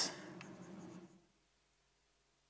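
Faint scratching of writing on a board for about the first second, then near silence.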